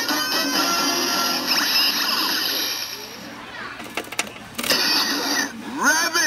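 Kamen Rider Build DX Build Driver toy belt playing electronic music and sound effects from its speaker with the vacuum-cleaner Full Bottle loaded. Partway through the music drops and a few sharp plastic clicks come as a second Full Bottle is pushed into its slot. Just before the end the belt's recorded voice calls out.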